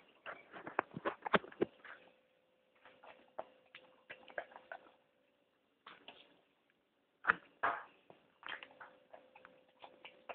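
Irregular clicks, knocks and short scraping bursts of a fork against a ceramic bowl and a small dog eating food off the fork, two louder bursts about seven and a half seconds in. A faint steady hum runs underneath.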